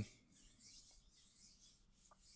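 Near silence: quiet room tone with a faint hiss.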